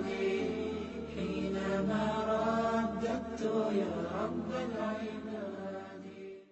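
Chanted vocal music: a voice sings long, bending notes in the channel's closing jingle.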